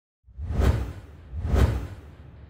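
Two whoosh sound effects about a second apart, each swelling up and dying away, with a deep low end.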